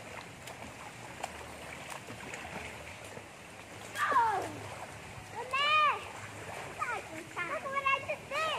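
Children in a swimming pool splashing, over a steady wash of water, with a child's high-pitched wordless shouts: a falling cry about four seconds in, a longer high call just before six seconds, and several shorter calls near the end.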